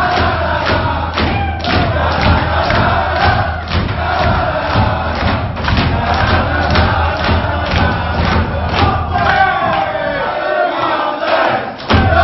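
A team of men singing a victory song together at the tops of their voices, with a clapped beat about twice a second. The low rumble under the singing drops away for a moment near the end.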